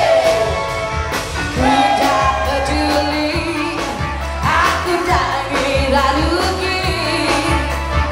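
Live band with electric guitars and keyboard playing an upbeat pop song, with a singer's voice over a steady beat.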